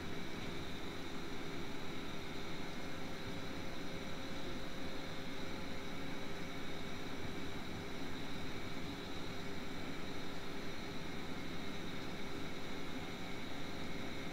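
Steady low background hiss with a faint, even hum: the recording's noise floor between the narrator's words.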